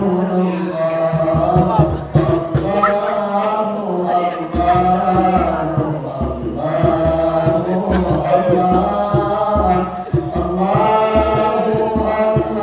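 Boys' nasyid group singing a cappella: a lead voice through a microphone with other voices joining in, over irregular low pulses.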